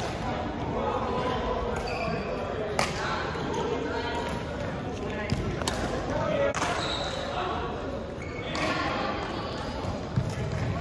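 Badminton rackets hitting a shuttlecock during a doubles rally, a few sharp hits that ring out in a large gym hall, over background voices.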